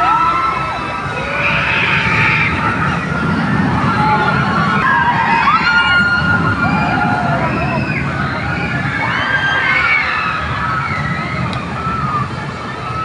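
Amusement-ride riders screaming: many overlapping high shrieks that rise and fall, thickest around the middle, over a steady low rumble.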